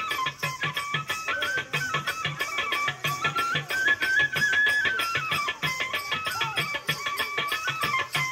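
Telugu pandari bhajana devotional music, an instrumental melody stepping up and down over a steady drumbeat of about three beats a second, with regular sharp clicks keeping time.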